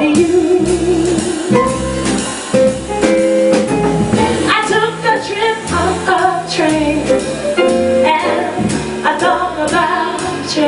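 Live jazz: a woman sings, opening on a long held note with vibrato, over a walking upright double bass and a drum kit.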